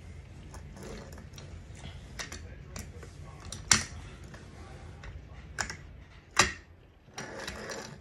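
Tripod collar and barrel of a Tamron 150-600 G2 lens clicking and knocking as the collar is turned and seated back on the lens. There are scattered small clicks, with the sharpest one a little before four seconds and two more strong knocks a few seconds later.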